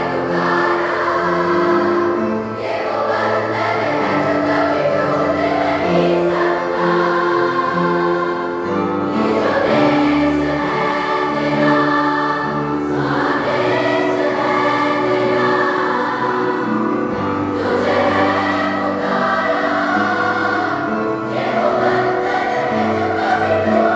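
A large school choir singing a Hindi song in many voices, over instrumental accompaniment of held low notes that change every second or two.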